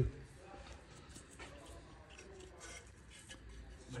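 Quiet room tone with a few faint clicks and handling noises.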